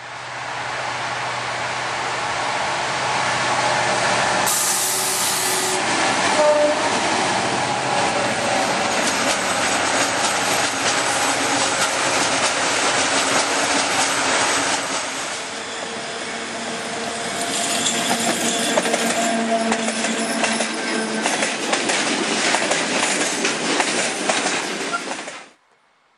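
Freightliner PL diesel locomotive passing close by with its engine running, then a long rake of open freight wagons rolling past with a steady rattle and clatter of wheels on rail. It is loud throughout, dips briefly partway through, and cuts off suddenly near the end.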